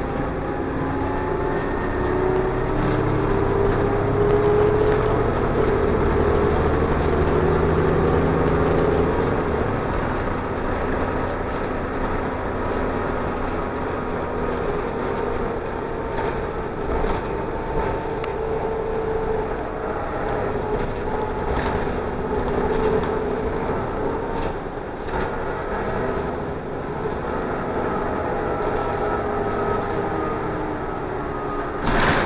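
City transit bus running along the street, heard from inside the cabin: engine drone and road noise, with the engine pitch rising as the bus speeds up in the first few seconds and rising and falling again later.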